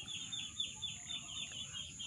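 A bird chirping faintly in a quick run of short, high, falling notes, about six a second, that fades out over the second half.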